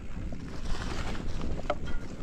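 Mountain bike rolling fast over a dry, leaf-covered dirt trail: steady tyre rumble and leaf crunch with small rattles from the bike and wind buffeting the camera microphone. A brief squeak comes near the end.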